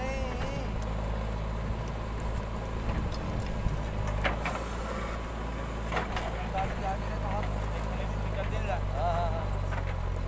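Diesel engine of a JCB 3DX backhoe loader running steadily under load as its backhoe dumps a bucket of soil into a trailer and swings back down to dig, with a few short knocks in the middle.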